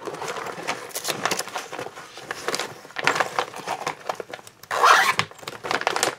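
Paper books and loose pages being handled: irregular rustling, sliding and scraping, with a louder rustle about five seconds in.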